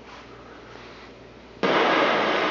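Loud white-noise static from a 1969 Admiral solid-state black-and-white console TV's speaker, which comes on suddenly about one and a half seconds in. It is the hiss of a set with no station tuned in.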